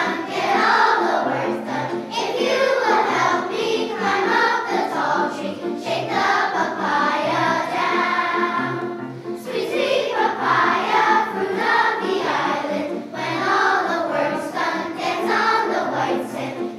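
A large children's choir singing with grand piano accompaniment. A long held note fades about nine seconds in, then the singing resumes.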